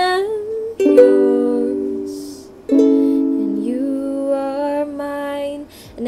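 A ukulele strummed once per chord, G then A, two strums about a second in and near three seconds in, each left ringing and fading under a woman's held singing of the end of the chorus line.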